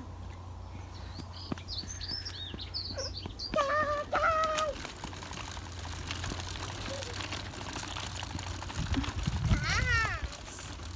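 Small birds chirping in quick high notes for a couple of seconds, over a steady low rumble. A child's voice is heard briefly near the end.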